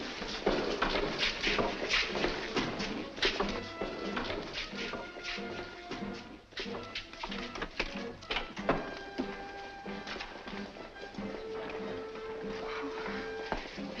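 Old film soundtrack music with long held notes, under a busy run of sharp knocks and clicks.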